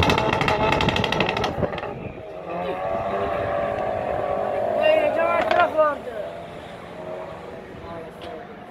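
Two hot hatchbacks, a Volkswagen Golf GT and a Ford Focus ST, launching from a standing start and accelerating hard down a runway, heard from a distance and mixed with people's voices. The sound is loudest in the first couple of seconds and fades toward the end as the cars draw away.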